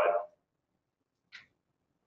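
A man's speaking voice trails off at the start, then near silence broken once, a little past halfway, by a brief faint hiss.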